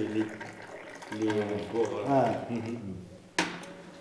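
Tea poured from a teapot held high, falling in a thin stream into small glasses and splashing, poured from that height so that it froths. A single sharp clink about three and a half seconds in.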